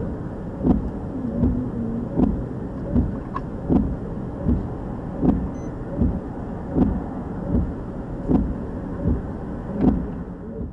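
Steady low rumble inside a police SUV's cab, with a short thud about every three-quarters of a second from the windshield wipers sweeping.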